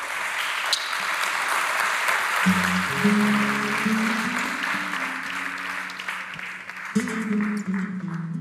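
Studio audience applauding, the clapping slowly thinning out. About two and a half seconds in, low held musical notes enter beneath the applause and change pitch near the end.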